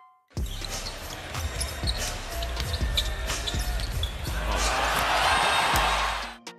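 A basketball being dribbled on a hardwood court, sharp bounces over arena crowd noise. The crowd grows louder near the end.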